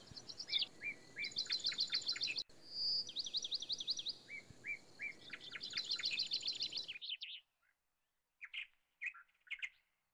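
Songbird singing: a held whistle followed by a fast run of trilled notes, in repeated phrases over faint background hiss. About seven seconds in the hiss and the full song cut off abruptly, leaving only a few faint, scattered chirps.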